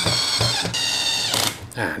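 A DeWalt 12V brushless cordless drill/driver running briefly as it drives a short screw into the plastic trimmer head. Its high motor whine shifts in pitch partway through and stops about a second and a half in.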